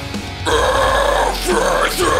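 Harsh growled deathcore vocal over a heavy metal backing track: the growl comes in about half a second in and runs in two long phrases, louder than the music.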